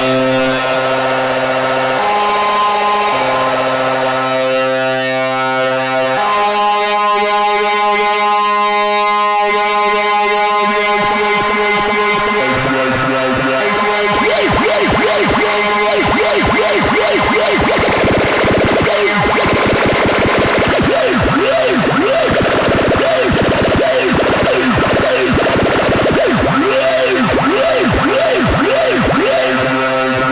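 Eurorack modular synthesizer holding a sustained droning chord that changes pitch every few seconds, run through the Dreadbox Phaser module. From about halfway on, the phaser's sweeps set up a fast, swirling up-and-down movement through the tone.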